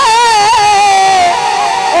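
A man singing a naat into a microphone, holding one long ornamented note whose pitch wavers and then steps down about two-thirds of the way through.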